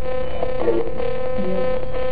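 Spirit box sweeping radio frequencies: a steady electronic hum, with short snatches of garbled sound about half a second and a second and a half in.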